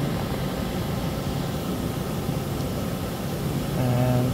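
Steady hum of running shop machinery: an even hiss with a low hum beneath it, unchanging throughout.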